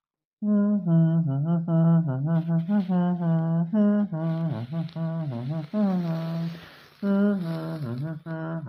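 A person humming a string of short notes, mostly on one pitch with brief dips. It starts about half a second in and pauses briefly near seven seconds.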